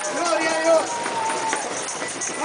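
Crowd voices singing and chanting, holding some notes for about half a second, over a continuous jingling of tambourines.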